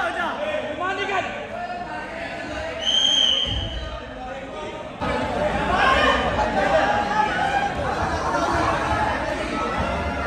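Several people talking and calling out at once in a large echoing hall, with a short high-pitched tone about three seconds in.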